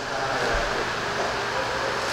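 Steady mechanical running noise, with a low rumble joining about half a second in.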